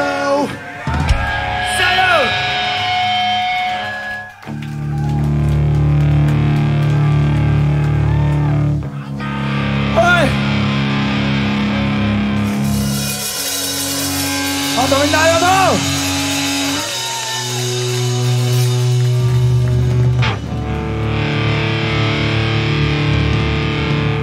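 Punk rock band's full song ends near the start. From about four seconds in, electric guitars ring out a slow run of long held chords through the amps, changing every few seconds, while the crowd cheers, shouts and whoops.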